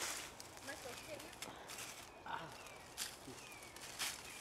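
Faint rustling and crackling of dry leaf litter as someone moves and crouches in it, with a few faint short chirps.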